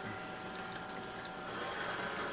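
Faint, steady background hum and hiss with a couple of thin, constant tones, and no distinct knock or click.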